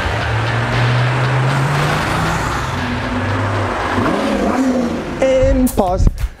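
Several police cars driving past on a speedway track, their engines running and rising in pitch as they accelerate.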